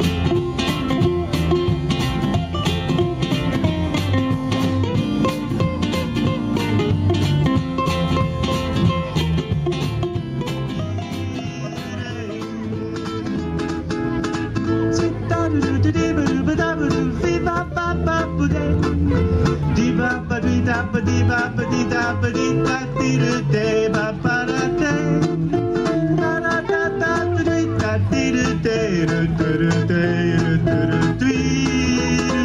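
A live jazz band playing an instrumental passage: ukuleles strumming over upright double bass and drums, dipping briefly in loudness about eleven seconds in.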